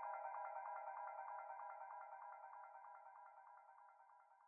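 The closing fade-out of a psytrance remix: a filtered synth pattern confined to the mid range, pulsing in a rapid even rhythm and growing steadily fainter.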